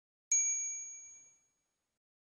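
A single bright ding, like a small bell struck once, ringing out and fading away over about a second.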